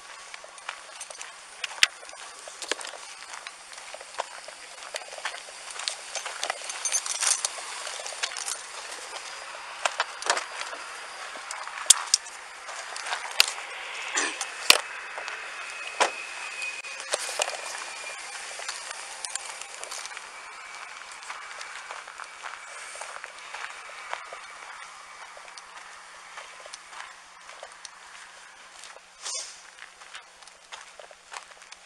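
Footsteps on dirt and gravel with irregular clicks and knocks of a body-worn camera and duty gear as the wearer walks, the knocks thickest around the middle.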